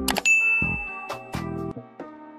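A single bright bell ding from a subscribe-button overlay's notification-bell click, ringing on for over a second over background music.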